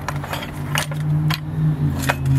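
Steel hand tools (wrenches, pliers and tool holders) clinking against each other and the cast-iron lathe as they are sorted through by hand: a few sharp, separate clinks over a steady low hum.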